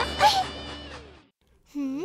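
Cartoon children's-song music ends with a brief voiced exclamation and fades to a moment of silence. Near the end, a short cartoon character voice begins, sliding quickly up in pitch.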